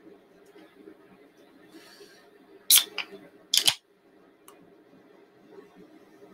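A can of Modelo Chelada being handled: three short, sharp snaps come about 3 s in, within about a second of each other, over a faint steady room hum.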